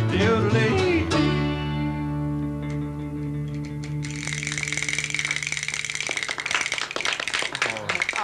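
An acoustic string band with guitars, mandolin and banjo ends a country song: a last sung word, then the final chord held and fading away. Applause breaks out about four seconds in and carries on to the end.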